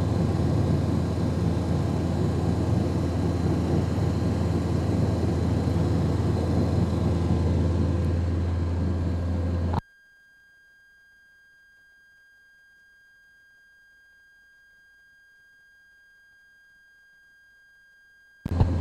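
Steady low rumble and hiss from an open-air microphone, cutting off abruptly about ten seconds in. Near silence follows, with only a few faint steady electronic tones.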